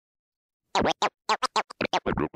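Turntable scratching: a record scratched back and forth in about eight quick, choppy strokes, each sweeping up and down in pitch, starting about three quarters of a second in.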